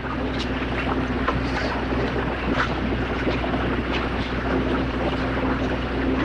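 Steady rushing background noise with a low electrical hum and a few faint ticks: the room and recording noise of a lecture hall.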